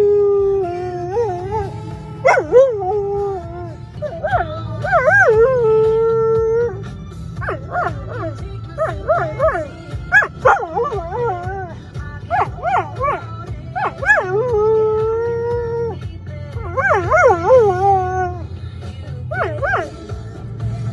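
A dog howling in a series of long, wavering howls that rise and fall in pitch, with short breaks between them, over the steady low rumble of a car cabin.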